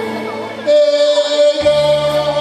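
A man singing a Korean song live into a microphone over instrumental accompaniment with a bass line. About two-thirds of a second in he starts a loud held note that lasts nearly a second before the melody moves on.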